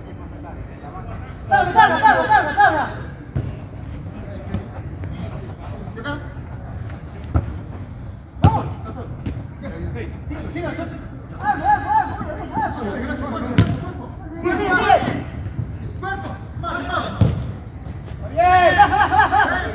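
Footballers shouting to each other across the pitch, with about four sharp thuds of a football being kicked, the loudest about eight seconds in.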